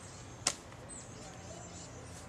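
A single sharp tap about half a second in, over a low steady background hum.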